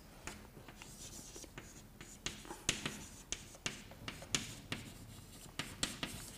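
Chalk writing on a blackboard: a run of short, irregular taps and scrapes as the words are written out.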